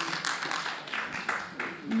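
Short rustling and tapping noises, with faint voices underneath.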